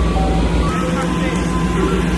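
Ice cream truck playing its chime jingle, a simple melody of clear single notes, over the steady rumble of the truck's idling engine.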